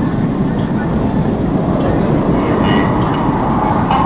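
Steady, loud roar of display jets flying overhead, with faint public-address commentary.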